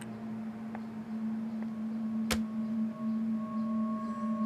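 Background score of sustained drone notes: a low held note, joined by a higher held note about halfway through and another near the end, with a single sharp click about two and a half seconds in.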